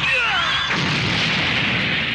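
Title-card sound effect: a sudden explosion-like burst with a few high whistling glides in the first half-second, then a loud, dense rushing noise.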